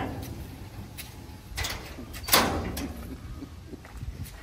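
Red sheet-steel gate clanking and banging, a few separate metallic hits with the loudest about two and a half seconds in, as it is worked and pulled open.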